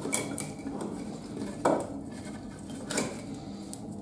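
Split firewood being laid by hand into the steel fuel chamber of an MPM DS lower-combustion boiler, the logs knocking against each other and the chamber walls: three knocks, the loudest a little past halfway.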